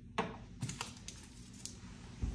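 About five short, sharp clicks and taps, the loudest about a quarter second in, from small medication vials and syringe supplies being handled on a countertop.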